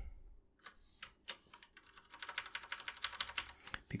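Typing on a computer keyboard: a few separate keystrokes, then a quick run of key presses in the second half.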